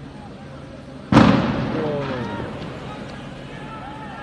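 A single loud explosion about a second in, echoing between the buildings and dying away over a couple of seconds, followed by people shouting.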